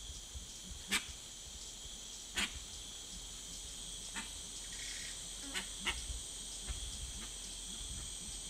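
Rainforest ambience: a steady high insect chorus, with a few short sharp clicks or snaps scattered through it.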